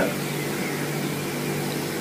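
A steady, even machine hum with a hiss behind it, unchanging throughout, with no knocks or other events.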